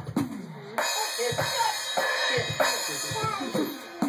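Roland electronic drum kit heard through its amplifier, struck unevenly by small hands: scattered tom and bass-drum hits whose pitch falls away after each stroke. A cymbal crash comes in a little under a second in and rings on, and it is struck again later.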